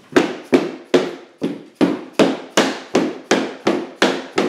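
Rubber mallet striking a tapping block against the edge of a laminate floor plank, knocking the plank's joint shut. About ten even blows at two to three a second.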